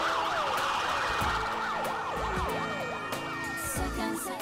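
Several sirens wailing at once, their pitches sweeping up and down and overlapping, over a few low thuds.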